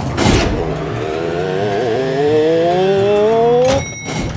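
Cartoon lift sound effect: the doors slide shut with a short swish, then a rising whine climbs steadily for about three seconds as the lift goes up, cutting off near the end with a brief high chime as it arrives.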